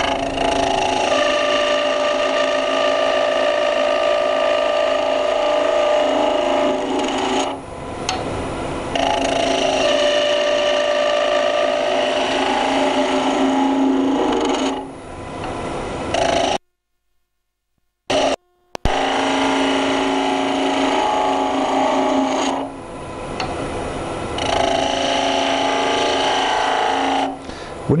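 Wood lathe running while a skew chisel cuts a spinning wooden spindle: a steady, loud whirring hiss of the cut in long passes, broken by short pauses between passes. The sound drops out completely for about two seconds a little past halfway.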